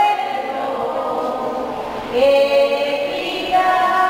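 A choir singing long held notes. The pitch steps up about two seconds in and changes again near the end.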